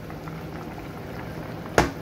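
Hilsa-and-eggplant curry bubbling at a steady boil in a steel pot, with one sharp knock near the end.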